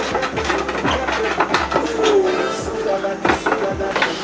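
Men straining with voiced grunts during an arm-wrestling pull, with music playing underneath.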